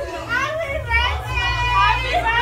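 Excited, high-pitched voices of several women shrieking and talking over one another, with a low steady hum underneath.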